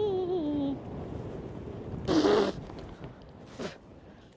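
A person's long, wavering groan falling in pitch, trailing off under a second in. About two seconds in comes a short, loud rush of noise, and a fainter brief one near the end.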